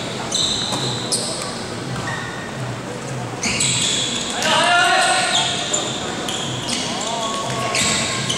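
Indoor basketball game: the ball bouncing on the court, sneakers squeaking on the floor in short high-pitched bursts, and players' voices calling out, with one loud call about halfway through.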